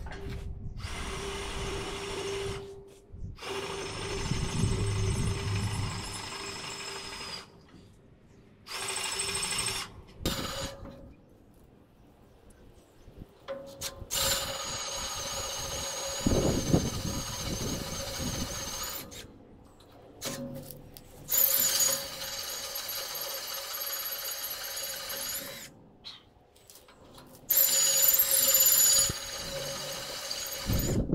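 Handheld power drill running in repeated bursts of one to five seconds with short pauses between them, its motor holding a steady pitch with a high whine.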